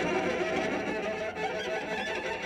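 Solo cello played with the bow: a quiet, steady trilled passage, the kind of trill that tends to make the bow jump on the string.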